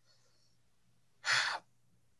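One short, breathy intake or sigh from a man about a second and a half in, between stretches of near silence.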